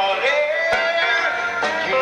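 Live country band playing: a gliding lead melody over the full band, with drum hits.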